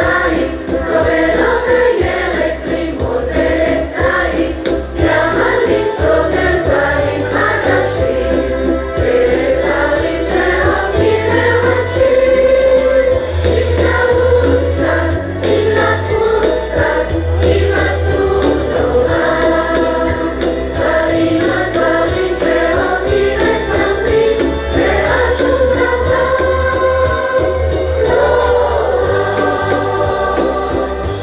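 A large mixed choir of children and adults singing a Hebrew pop song together, over an accompaniment with a stepping bass line and a steady beat.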